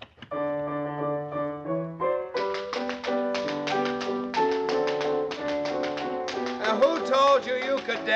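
A piano plays a waltz-clog tune. From about two seconds in, the clatter of tap-dance steps is heard over it: a dancer doing the waltz clog. A voice comes in near the end.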